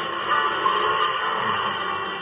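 Cartoon soundtrack music with a vehicle driving effect mixed in, played through a TV speaker and picked up second-hand by a phone.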